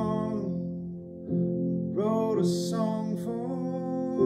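Upright piano playing sustained chords, with a man's voice singing a phrase over it about halfway through.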